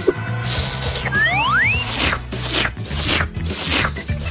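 Cartoonish eating sound effects: a rising whistle about a second in, then a run of about six short rasping, crunching strokes as a mouthful of ice cream is chewed. Background music with a low steady bass runs underneath.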